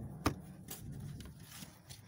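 Mail being handled: envelopes and paper slips rustling and shuffling in the hands, with a sharp click about a quarter second in and a few fainter taps after it.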